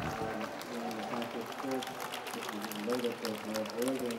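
Indistinct voices with music, and scattered small clicks.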